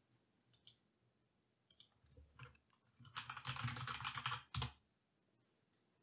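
Faint typing on a computer keyboard: a few scattered key presses, then a quick run of keystrokes lasting about a second and a half, and one last key press shortly after.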